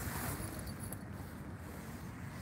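Low, steady outdoor background rumble with no distinct events.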